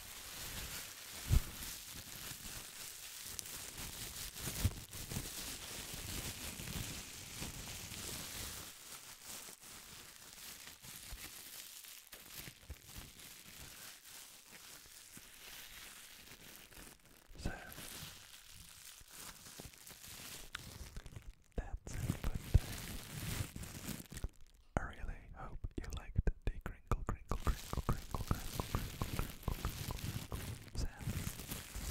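Thin clear plastic bag crinkled and crumpled between the hands right at a microphone: a steady rustle at first, softer through the middle, then rapid sharp crackling over the last third.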